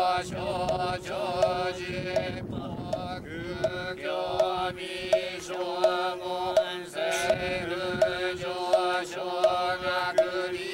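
Buddhist priests chanting a sutra in unison, held mostly on one steady pitch, over a regular beat of knocks about one every 0.7 seconds.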